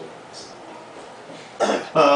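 A man coughs once, clearing his throat close to the microphone, a short loud burst near the end against quiet room tone.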